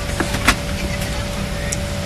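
Airliner cabin noise: a steady low engine and airflow rumble with a faint steady hum above it. A sharp click comes about half a second in.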